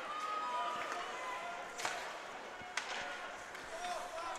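Ice hockey play on an indoor rink: a steady hiss of skates on the ice with two sharp clacks of stick on puck about a second apart near the middle.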